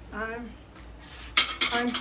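Glazed ceramic dishes clinking as one is set down among others: a sharp clatter about one and a half seconds in, then a few lighter clinks. A short vocal sound comes just after the start.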